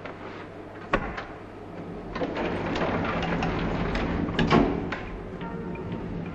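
Lift car sounds: a sharp click about a second in, then the car's mechanical running noise building up, with a loud clunk about four and a half seconds in. Soft music plays underneath.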